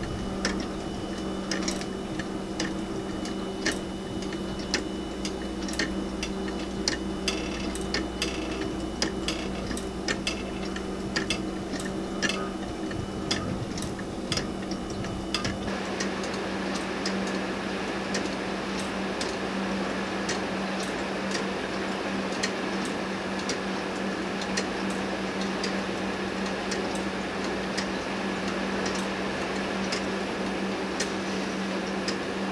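Weight-driven 3D-printed plastic pendulum clock ticking steadily, its escapement clicking a little more than once a second. The ticks grow fainter about halfway through as a steady hiss rises behind them.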